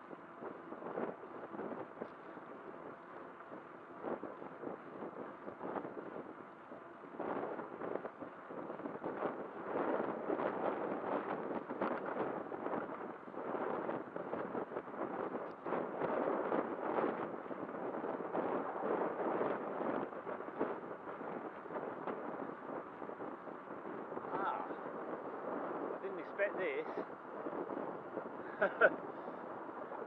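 Wind buffeting the microphone of a camera riding on a moving bicycle, over a steady rumble of tyres on tarmac, with frequent irregular knocks and rattles from the ride. A short laugh comes near the end.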